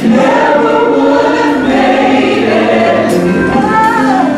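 Gospel choir singing in several parts at once, a steady loud sung passage, with one voice rising in pitch near the end.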